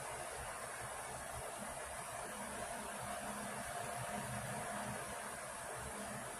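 Steady background hiss with no distinct sound standing out.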